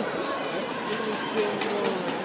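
Crowd chatter and shouting voices in a judo competition hall, a steady mass of overlapping voices with a few short, sharp sounds near the middle.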